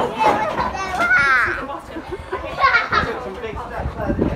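Young children's voices at play, with a high call rising and falling about a second in and more voices near the end.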